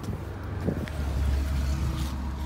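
A low rumble that grows louder about a second in, with a couple of light clicks just before it.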